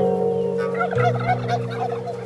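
Domestic tom turkey gobbling once: a rapid, warbling gobble that starts about half a second in and lasts about a second.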